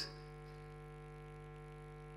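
Steady electrical mains hum through the microphone and sound system: a constant set of low tones that does not change.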